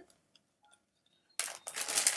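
A few faint clicks, then about one and a half seconds in, loud crinkling of packaging begins as hands rummage through it.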